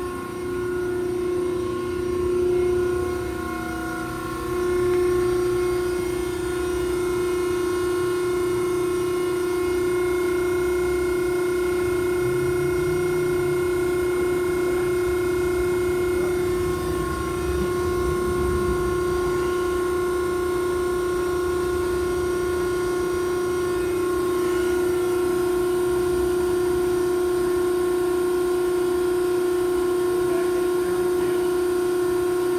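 Betenbender hydraulic squaring shear's hydraulic pump and electric motor running steadily at idle, giving a constant, even-pitched hum with no cutting stroke.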